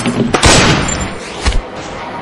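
Two gunshots: a loud first shot about half a second in with a long echoing tail, then a second, sharper shot about a second later.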